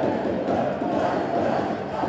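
Crowd of basketball fans in a sports hall: a steady noise of many voices at once.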